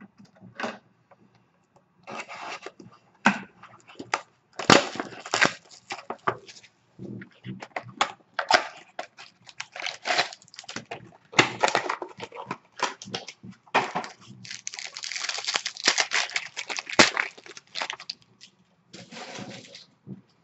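Plastic shrink wrap being torn off a sealed trading-card box by hand and the box opened, in irregular crinkles, crackles and rips. A denser, longer stretch of crinkling comes about three quarters of the way through.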